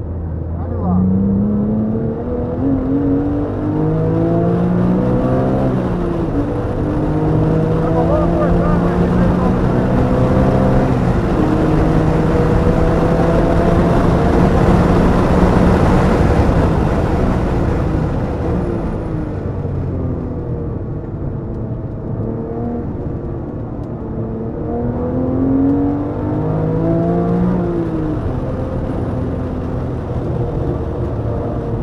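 Porsche 911 GT3 flat-six engine pulling hard through several upshifts, its pitch rising and stepping down at each shift. At full speed on the straight, a loud rush of wind and road noise builds over the engine. The engine then winds down under braking and pulls up through the gears again near the end.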